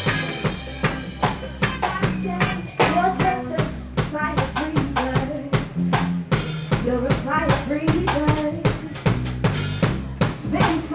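Live reggae band playing a steady beat: drum kit with rimshots and snare over bass guitar and acoustic guitar, with cymbal crashes at the start and again about six seconds in.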